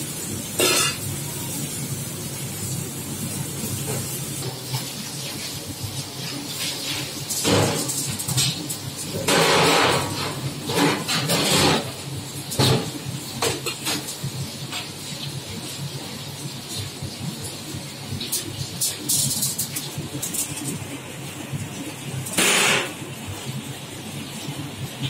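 Aluminium foil crinkling in several short bursts as the sheet is handled on a steel counter, over a steady low hum.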